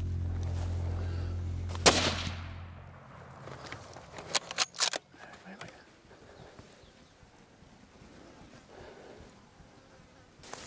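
A single loud, sharp rifle shot about two seconds in, fired at a Cape buffalo, with a short echoing tail. A quick cluster of sharp clicks and knocks follows a couple of seconds later.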